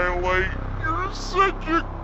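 A slowed-down cartoon pony's voice: one long, drawn-out syllable at the start, then a few short syllables, over a steady low hum.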